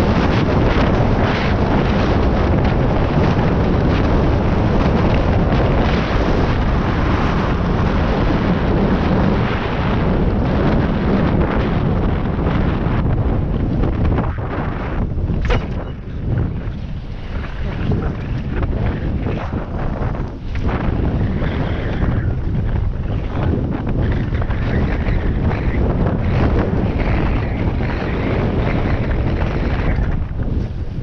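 Wind buffeting a helmet-mounted camera's microphone during a fast mountain-bike descent, mixed with the rumble of tyres on a dirt and gravel trail. Steady for the first half, then it eases and turns choppy, with short knocks from the bike over bumps.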